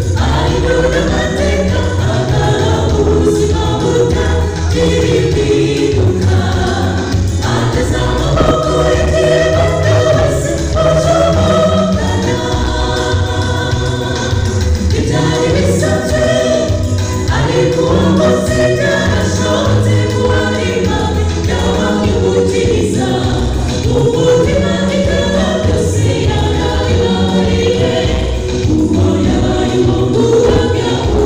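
A choir singing a gospel song, with steady low-pitched accompaniment underneath.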